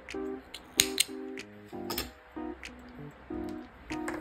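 Small thread snips cutting a cotton yarn tail: a few sharp snips, the loudest about a second in and around two seconds in, over soft background music with plucked notes.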